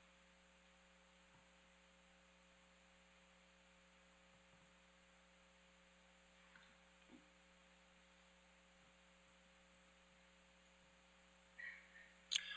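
Near silence: a faint steady hum of room tone.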